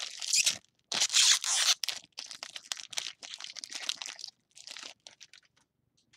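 A foil trading-card pack wrapper being torn open and crinkled by hand. Two loud rips come in the first two seconds, then lighter crinkling fades out about five seconds in.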